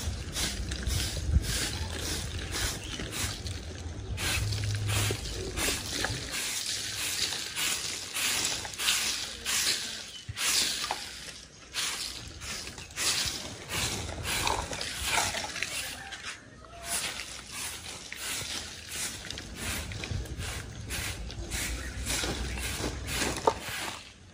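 A short-handled grass-bundle broom sweeping a bare dirt yard: repeated, uneven swishes, about one or two a second, with brief pauses.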